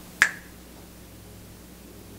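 A single finger snap about a quarter of a second in, then quiet room tone with a faint steady hum.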